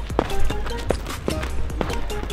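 Background music: sustained notes over a steady beat.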